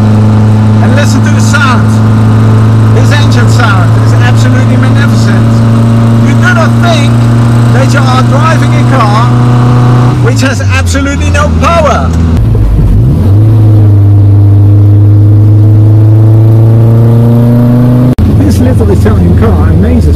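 The Innocenti Coupé's 1098 cc four-cylinder engine, heard from inside the cabin as the car is driven. It runs steadily under load at first. About halfway through its pitch falls, dips and picks up again, then climbs slowly as it pulls. There is a short break in the sound near the end.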